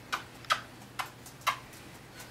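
A person giving a cat a string of quick kisses on the lips: four short kiss smacks about half a second apart.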